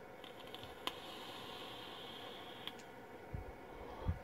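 Faint sizzle of a vape's rebuildable dripping atomizer coil firing during a long draw for about two and a half seconds, ending with a click. A soft exhale follows near the end.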